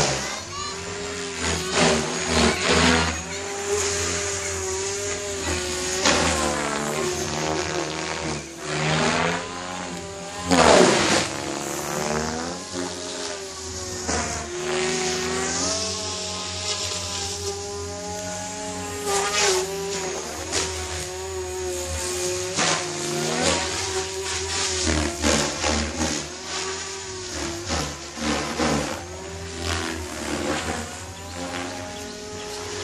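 Electric Goblin 500 RC helicopter flying 3D aerobatics: the whine of its motor and rotor head rises and falls in pitch with each manoeuvre. About eleven seconds in, the pitch swoops sharply down and back up.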